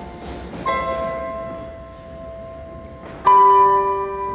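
Electronic stage keyboard playing slow sustained chords, one struck about two-thirds of a second in and a louder one just after three seconds, each ringing on and slowly fading: the opening of a song.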